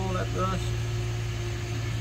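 A steady low hum with no rhythm or change, under a drawn-out spoken word in the first half second.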